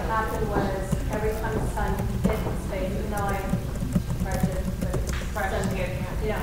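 A woman talking, heard from across a room with the words unclear, with a few short sharp knocks scattered among the speech.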